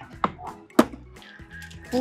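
Two sharp clacks of a hard plastic bulk-candy bin lid and scoop being handled, the second louder, over background music.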